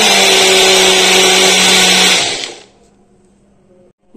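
Small countertop blender running at full speed, grinding spinach, garlic and green chillies into a smooth paste: a loud steady whir with a motor hum, which stops a little over two seconds in and winds down quickly.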